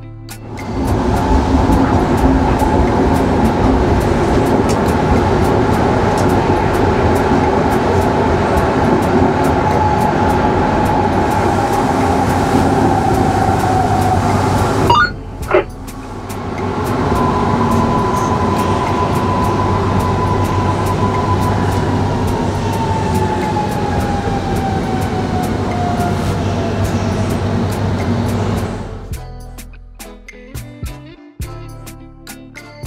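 A train running, heard from the driver's cab, with a whine that falls slowly in pitch as the train slows. The sound breaks off briefly about halfway through, then starts again with a second falling whine.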